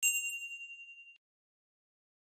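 A single bright bell 'ding' sound effect, ringing with a fast flutter and fading for just over a second before cutting off. It is the chime for a click on a subscribe-notification bell icon.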